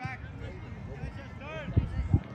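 Voices of players and onlookers calling out across a soccer field, with a shout about one and a half seconds in, over an outdoor rumble. Two low thumps near the end.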